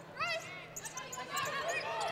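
Basketball game court sounds: a short high squeak of sneakers on the hardwood floor and the ball bouncing, over a low arena crowd background.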